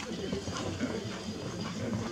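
A horse cantering on a sand arena, mixed with indistinct talking from onlookers.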